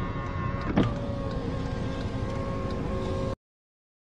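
Electric motor whine of the car's power door mirror moving, steady, with a click about a second in. The sound cuts off suddenly near the end.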